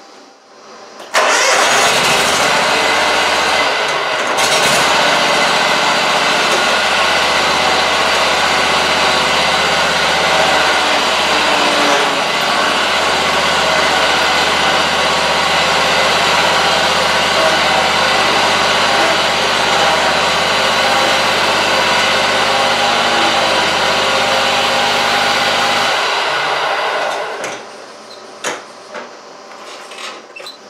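Scag Tiger Cub zero-turn mower's engine, coming in suddenly about a second in and running steadily, then stopping near the end. It runs while the mower is tried out after the loose bolts on its hydrostatic steering were tightened.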